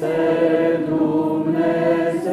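A congregation of many voices singing an Orthodox hymn unaccompanied, holding long, steady notes.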